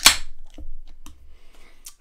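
Aluminium beer can's pull tab cracked open at the very start: a sharp pop and a short hiss of escaping carbonation. A few faint clicks follow.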